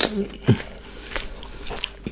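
Close-miked chewing of a mouthful of chicken burger: irregular wet mouth clicks and soft crunches, with a sharp click at the start and a louder low thud about half a second in.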